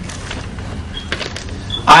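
A pause in a man's speech at a microphone: a steady low hum and room noise of the hall's sound system, with a few faint clicks about a second in. His voice comes back loudly near the end.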